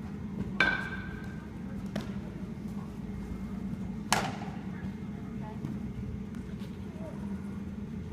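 Baseballs smacking into leather gloves during a throwing drill: two sharp pops about three and a half seconds apart, with a few fainter knocks, over the steady low hum of a large indoor hall.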